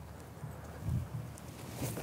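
Faint outdoor background with a few soft, low thuds of footsteps on grass as a worker steps up to a wooden profile board and crouches.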